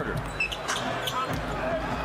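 A basketball dribbled several times on a hardwood court, over the steady background noise of an arena crowd.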